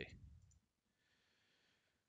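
Near silence: the tail of a man's voice fades out in the first half-second, then nothing but faint room tone.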